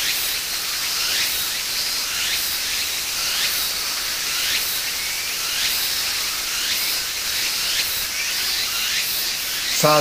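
Steady high-pitched hiss of insects singing in the grass and rice fields, with a short chirp repeating about once a second over it.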